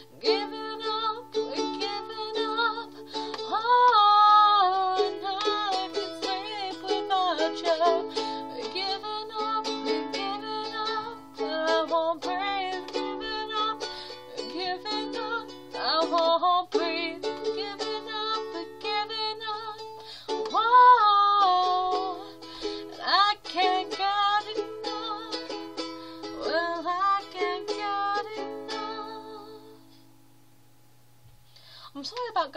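Makala ukulele strummed in chords under a woman's singing voice, picked up by a phone's microphone. The strumming and singing fade out at the end as the song finishes.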